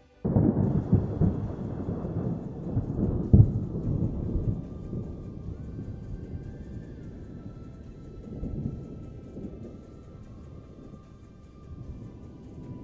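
Fireworks booming and crackling: a sudden burst of low rumbling starts at once, with one sharp loud bang about three and a half seconds in, then fades into lighter rumbling with another swell later.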